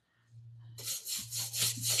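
Paintbrush bristles scrubbing paint across the ribs of a corrugated metal washboard, a scratchy rubbing that picks up about a second in.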